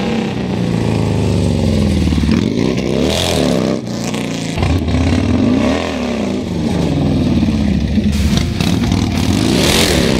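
Harley-Davidson V-twin motorcycle engine revving hard and accelerating along the street. Its pitch climbs and drops back several times as the throttle is opened and closed and it shifts gears.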